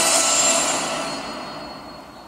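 Closing sound effect of a movie trailer: a rushing, rumbling whoosh that fades steadily away as the trailer ends.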